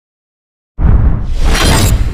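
Cinematic logo-reveal sound effect: after silence, a sudden impact hit just under a second in, with a glass-shatter burst over a deep rumble.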